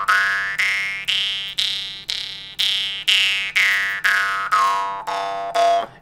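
Jaw harp tuned to G, plucked about twice a second in a steady drone, while the tongue sweeps the singing overtone slowly up to its highest pitch and then back down again. This is a pitch-control exercise for playing melodies.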